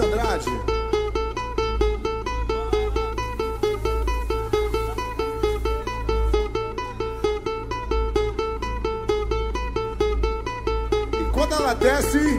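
Live pagodão baiano band playing an instrumental passage: a fast riff of short, evenly repeated notes over a steady beat, with the low bass heavily boosted.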